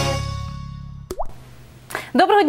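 The last chord of a TV programme's intro jingle rings out and fades. About a second in comes a single plop sound effect: a click with a quick rising bloop.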